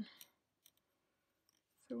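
Two faint, short clicks of wooden knitting needles as the knitting is turned over, in a pause between spoken words.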